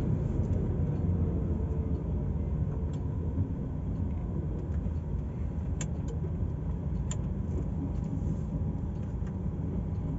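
DAF truck's diesel engine running steadily at low revs, heard from inside the cab, with a couple of faint clicks about six and seven seconds in.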